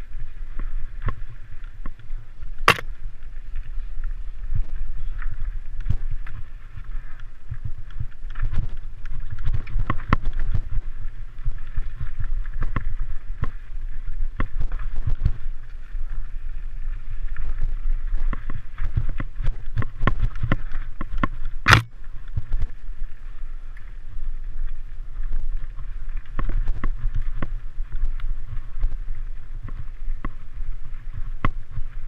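Mountain bike ridden over a rocky dirt single track, heard through a camera mounted on the rider or bike: a steady low rumble of vibration and air on the microphone, with frequent knocks and rattles as the tyres hit rocks. Two sharp clicks stand out, about three seconds in and again about two-thirds of the way through.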